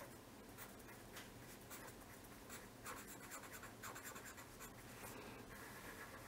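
Faint scratching of a felt-tip pen on paper, short irregular strokes as letters are written by hand.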